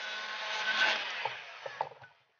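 Paint-stripping heat gun running, a steady rush of blown air with a faint whine, growing louder and then fading as it is moved over and away from the PVC ring. A few light knocks come in the second half.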